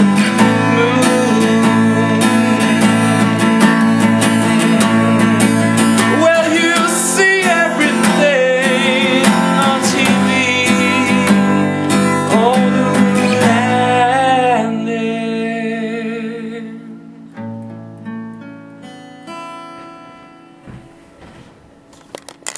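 Steel-string acoustic guitar strummed hard, with a man's voice singing along without clear words. About fifteen seconds in the strumming stops and a few last notes ring out and fade away, closing the song.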